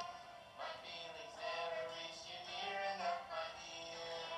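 A song playing: a sung melody over its backing music.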